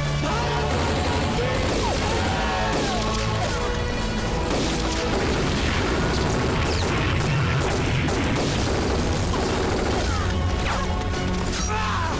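War-film battle sound mix: explosions and bursts of gunfire under an orchestral music score, with soldiers shouting.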